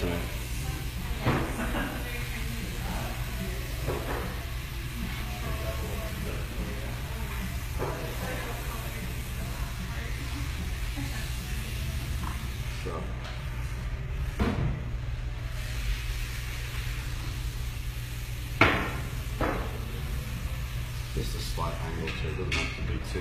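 Salon room tone: a steady low hum with faint background voices, and a few short clicks from the comb and sectioning clips as the hair is parted into sections. The loudest click comes about three-quarters of the way in.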